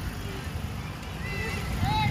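Wind rumbling on the microphone over faint, scattered voices of children and onlookers, with one voice calling out near the end.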